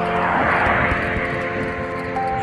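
A car passing close by: its road and engine noise swells about half a second in and then fades as it pulls away.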